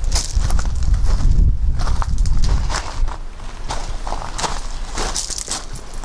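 Footsteps crunching on loose gravel in an irregular walking rhythm, with a low rumble under the first half.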